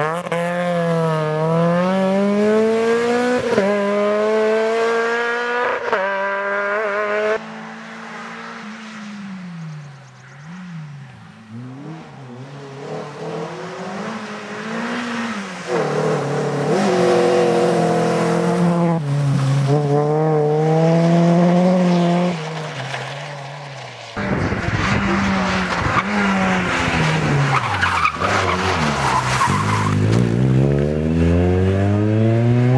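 Race-prepared Volkswagen Golf engines revving hard and shifting up through the gears as the cars pass one after another, the pitch climbing and dropping back at each shift. There is a quieter, more distant stretch in the middle and a loud, rough close pass near the end.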